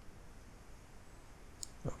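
A quiet pause with faint room tone, broken by one short, sharp click about one and a half seconds in; a man's voice starts just before the end.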